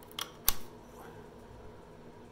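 Two sharp clicks about a third of a second apart, the second louder, as a saw blade is handled at the clamp of a cordless reciprocating saw.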